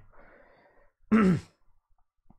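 A man clears his throat: a faint breath, then one short voiced clearing sound with a falling pitch about a second in.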